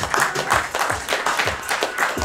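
Audience clapping and applauding over background hip-hop music with a steady beat.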